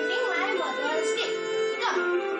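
A child's voice speaking over background music with long held tones.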